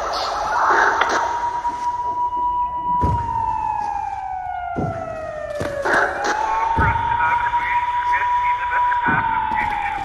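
A siren wailing slowly: it rises to a held high note, then slides down over several seconds, and the cycle comes twice. It is slowed down with heavy reverb, and a few low thumps fall in between.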